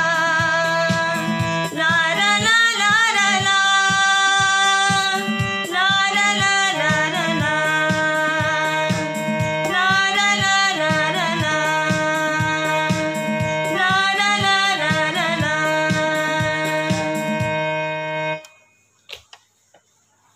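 A Hindi group song, sung in wavering phrases over held keyboard chords and a steady beat. The music stops about a second and a half before the end.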